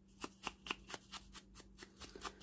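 Ink blending tool's foam pad dabbed quickly against the edge of a small piece of book-page paper held in the hand: faint, light taps and paper rustle, about six or seven a second, inking the paper's edges.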